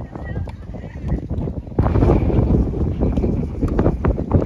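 Tennis ball struck by rackets in a doubles rally, a few sharp hits. About two seconds in, a loud rumbling of wind on the microphone sets in suddenly.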